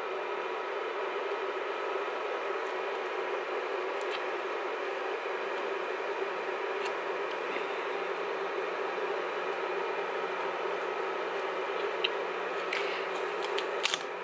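Steady background hum and hiss, with a few faint clicks and scrapes from a metal spatula prying a glued blush pan out of its compact.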